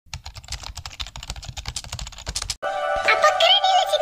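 Rapid keyboard-typing clicks, about ten a second, stopping abruptly about two and a half seconds in. Music with held tones and a gliding high melody follows.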